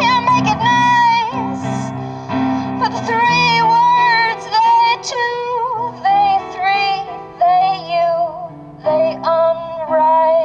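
A woman singing an improvised song, holding long wavering notes, over sustained electronic keyboard chords, amplified through PA speakers.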